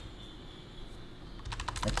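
A quick run of computer keyboard keystrokes, several sharp clicks in under half a second near the end, over low room hum.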